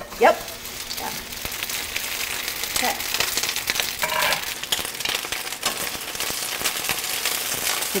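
Shishito peppers sizzling in hot olive oil in a stainless steel skillet just after being tipped in: a steady frying hiss full of small crackles and pops.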